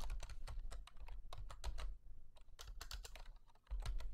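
Typing on a computer keyboard: a quick, uneven run of keystrokes, several a second.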